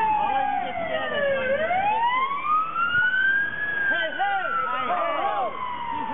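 Emergency-vehicle siren in a slow wail: its pitch falls for the first second and a half, climbs for about two seconds, then falls again. Voices join partway through.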